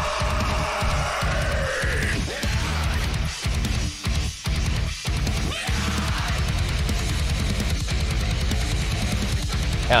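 Progressive metalcore song playing: heavy distorted guitars, bass and drums, with a sung vocal line over the first couple of seconds. A run of short stop-start gaps in the middle leads into the breakdown.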